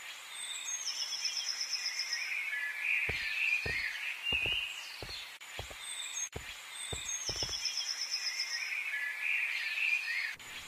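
Woodland ambience of birds calling: a long, steady, high whistled note and a cluster of chirps, the same pattern coming round again about six seconds later. A string of soft low thumps runs through the middle.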